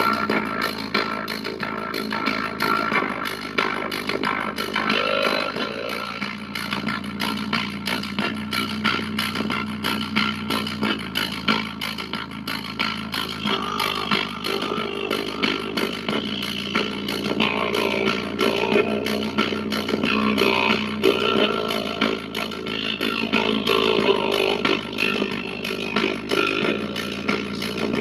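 A JBL Flip 5 portable Bluetooth speaker playing a dance track loudly, with a steady beat and a deep bass line that steps to a new note every few seconds, pushed out through its end passive radiator.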